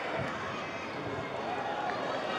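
Pitch-side ambience of a women's football match: players' voices calling across the field over a steady outdoor background, with only a light crowd.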